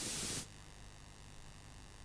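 Steady hiss of background recording noise with no music, dropping suddenly to a fainter hiss with a faint hum about half a second in.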